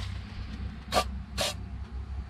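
Cantesco aerosol can of red dye penetrant sprayed in two short bursts, about a second in and again half a second later. This is the first step of a dye-penetrant crack test on a cylinder head.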